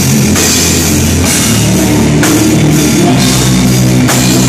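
A live punk rock band playing loud: a DW drum kit pounding with cymbal crashes about a third of a second in and again a little past two seconds, over electric bass and guitar through Marshall amps. Recorded close to the stage on a cell phone.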